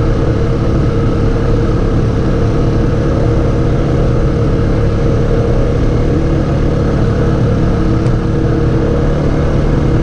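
Can-Am Outlander 700 ATV engine running at a steady pace while riding along a gravel road, with no revving or change in speed.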